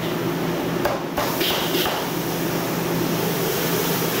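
Cleaver chopping duck on a thick wooden chopping block: a quick run of about four sharp chops in the first half, over a steady low hum.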